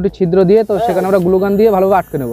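A person's voice, loud, with short pauses.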